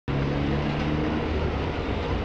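Massed tubas and euphoniums holding low sustained notes together; the upper notes drop out about a second and a half in, leaving a lower bass note.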